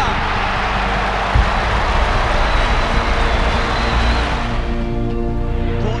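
Football crowd roaring in response to a spectacular high mark; the roar dies away about four and a half seconds in. A background music track with long held notes runs underneath, with a single low thump about a second and a half in.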